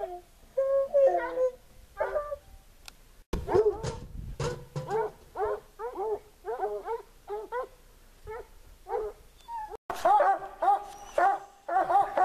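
Hunting hounds baying, a steady series of drawn-out, bending bawls; after an abrupt break near the end several hounds bay together, overlapping, at the base of a tree: barking treed, the sign that the cougar is up the tree.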